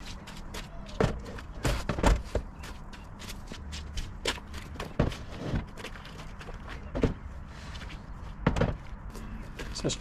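Scattered knocks and thuds of large plastic storage boxes being lifted and set down into a van's slide-out boot tray. The knocks come singly, a second or so apart, with shuffling steps between them.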